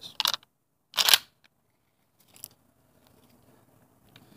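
A single 12-gauge shotgun shot about a second in, sharp and brief.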